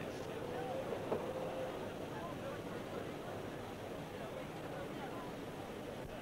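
Steady background hiss of an old outdoor match recording, with a faint, brief thin tone about a second in.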